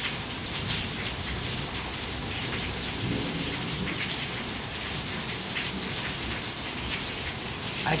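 Heavy rain falling steadily, with water streaming off a roof edge and splattering below.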